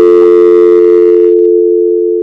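A loud, steady electronic tone of several pitches sounding together, begun abruptly. Its higher notes die away partway through while the low notes hold and slowly fade.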